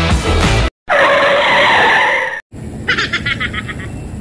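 Rock background music cut off abruptly, then a tyre-skid sound effect lasting about a second and a half. It stops as suddenly, giving way to quieter outdoor ambience with a short run of rapid high chirps, about eight a second, near the end.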